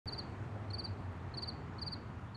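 Crickets chirping: high-pitched chirps of three or four quick pulses, repeating about every half second, over a low steady hum.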